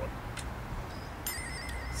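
Steady low outdoor background rumble, with a single click and, from about halfway through, a faint rapid high-pitched pulsing tone.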